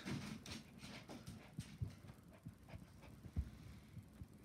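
Puppies moving and playing on blankets: faint scattered pattering and scuffling with a few soft thumps, the loudest about three and a half seconds in.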